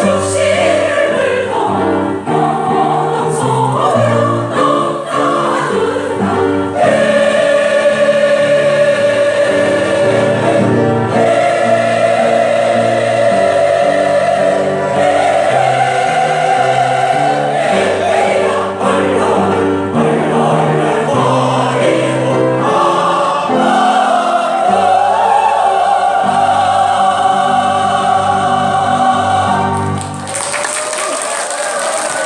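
A senior mixed choir of women and men singing in harmony, with long held chords that shift step by step.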